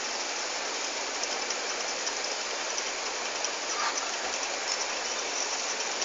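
Aquarium filter running: a steady hiss of splashing, trickling water.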